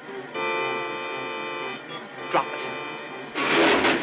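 Cartoon orchestral score holding a steady chord, followed by a single sharp click about two seconds in. Near the end comes a loud, noisy sound-effect burst as the golf club ends up stuck in the sink drain.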